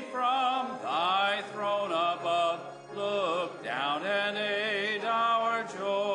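Hymn singing led by a man's voice, in phrases of held notes with vibrato.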